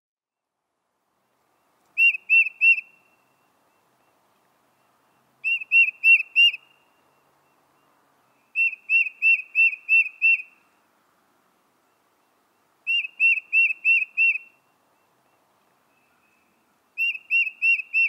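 A songbird singing: short phrases of three to six quick, identical whistled notes, about four notes a second, repeated every three to four seconds.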